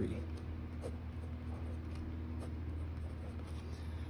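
Pen writing on notebook paper: a few faint short strokes as numbers and fraction bars are written, over a steady low hum.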